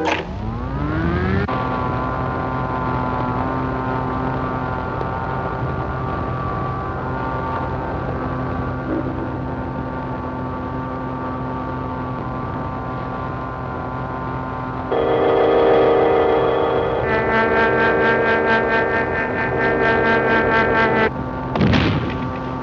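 Cartoon sound effect of the giant magnetic telescope powering up: a rising whine for the first second or so, then a steady electrical hum of several tones. It grows louder about two-thirds of the way through and pulses rapidly, about five times a second, near the end.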